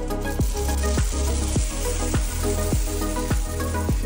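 Small cut pieces of hard candy pour into and shift about a metal tray, making a dense, continuous hiss-like rattle. Background music with a steady beat of about two a second plays over it.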